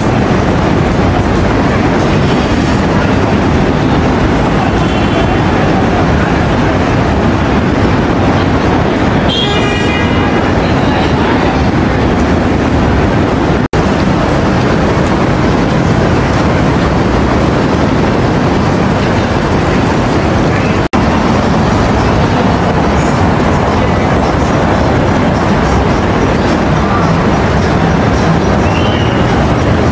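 Steady, loud city traffic noise. A brief pitched sound, horn-like, rises above it about ten seconds in, and the sound cuts out for an instant twice.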